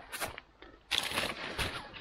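Rustling and crinkling of plastic bags and nylon gear being rummaged through by hand, in short bursts, the longest starting about a second in.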